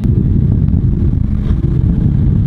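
Twin-V8 speedboat running at speed: a loud, steady, low engine drone.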